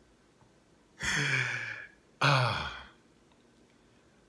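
A man lets out two breathy sighs about a second apart, the second one falling in pitch, with near silence around them.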